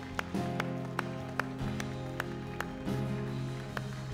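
A worship band plays a soft instrumental underscore of held keyboard and bass chords, with a light, even tick about two or three times a second.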